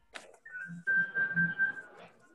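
A click, then a single steady high whistling tone held for just over a second over the call's audio, with faint muffled sounds beneath it.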